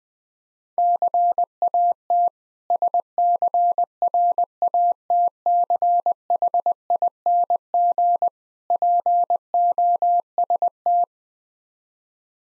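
Morse code sent at 20 words per minute as a single steady beeping tone keyed in short and long elements, spelling out "CAT SCRATCHING POST". It starts about a second in and stops about a second before the end.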